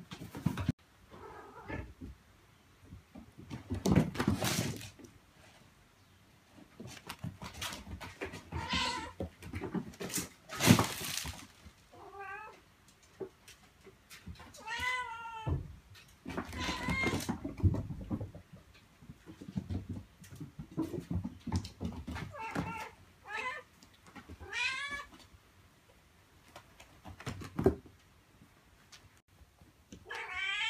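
A mother cat calling her kittens with repeated meows, some drawn out and rising and falling, some short and warbling, a second or two apart. A few harsher, louder bursts come between the calls, the loudest about eleven seconds in.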